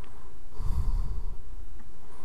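A man breathing out close to the microphone, a soft breathy rush lasting about a second, over a low steady rumble.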